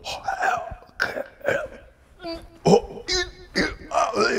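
A man performing a sound poem of raw, wordless vocal sounds into a handheld microphone: a string of short, separate throat noises, grunts and clicks, with a brief high squeal about three seconds in.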